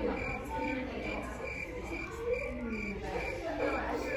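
A short, high-pitched chirp or beep repeated evenly about three times a second, stopping about three seconds in, with faint voices underneath.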